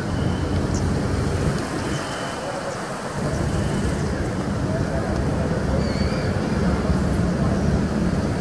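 Outdoor street ambience: a low, uneven rumble of road traffic that eases off briefly a few seconds in, with faint voices.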